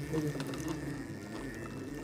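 Homemade chain-driven winding machine running steadily with a faint, steady high whine and a low hum, while thin wire is wound onto its shaft to form a coil spring.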